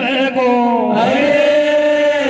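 Men singing a Meena Waati folk song into microphones, amplified through a PA. A long steady note is held through the second half.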